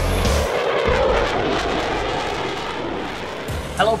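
The end of a logo-intro music sting: its heavy beat cuts off about half a second in. A long rushing sound effect follows and slowly fades over the next few seconds.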